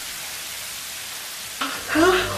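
A steady, even hiss, like frying or rain; a voice starts near the end.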